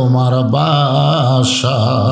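A man chanting lines in a sung melody, holding long drawn-out notes with a slight waver.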